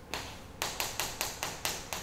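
Chalk tapping on a chalkboard as a formula is written: a quick run of about eight sharp taps, most of them in the second half.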